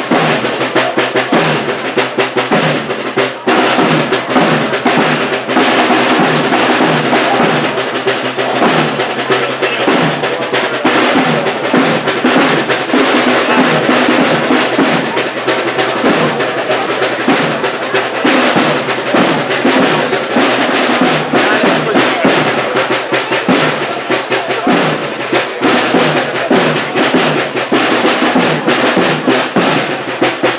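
A Holy Week processional band plays a march, with pitched wind or brass over snare drum rolls and bass drum at a steady marching beat.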